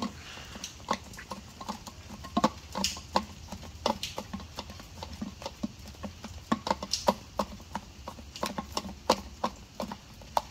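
Irregular light clicks and knocks, a few each second, some ringing briefly: a utensil and bowl being handled while chicken feed is mixed with water.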